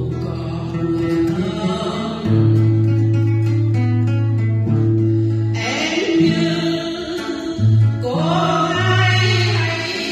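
A vocalist singing a slow Vietnamese song over instrumental backing with guitar and held bass notes. Long sung notes waver with vibrato near the end.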